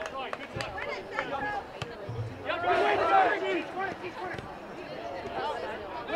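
Distant voices of people on and around a soccer field calling out, the loudest stretch about three seconds in, with a few faint knocks scattered through.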